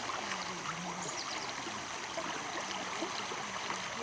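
Shallow river running over stones, a steady trickle with faint gurgles.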